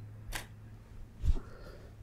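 Olympus OM-1 camera's shutter firing for a flash test shot: a sharp click about a third of a second in, then a louder low thump about a second later.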